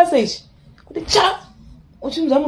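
A person sneezing once, a short noisy burst about a second in, just after a trailing bit of speech.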